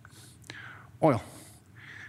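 A man's voice saying a single short word in a pause, with soft breath noise before and after it and a faint click about half a second in.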